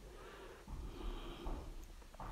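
Faint, soft swishing of a hand rubbing soaked soybeans together in a bowl of water to loosen their hulls.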